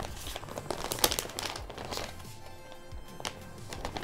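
Crinkling of a metallised anti-static plastic bag, handled and shaken to empty out the dust and fluff collected from a dirty PC, with irregular crackles throughout. Background music plays underneath.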